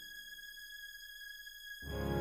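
Yamaha Montage 7 synthesizer holding a faint, steady high tone with a thin set of overtones after the previous chord has died away. Near the end a new, much louder chord with low notes comes in.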